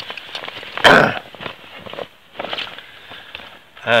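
A man's single loud, harsh cough about a second in, then faint, quieter sounds.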